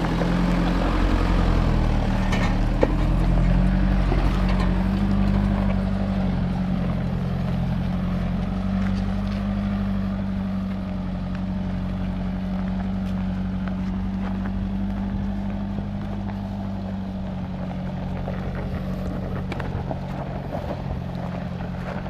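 A Nissan Navara 4x4's engine running under load as it climbs a steep dirt track, slowly fading as it moves away. There is a sharp knock near three seconds in.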